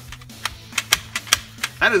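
Sharp plastic clicks of a BOOMco Gauntlet Grip spring-plunger foam-dart blaster being primed by hand, about five clicks over under two seconds. The plunger prime is very short.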